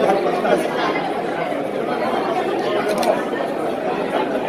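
Crowd chatter: many voices talking over one another at a steady level, with no single speaker standing out.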